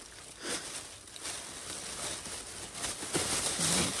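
Plastic shopping bag rustling and crinkling as fingers work a tight knot in its handles loose, getting busier toward the end until it comes undone.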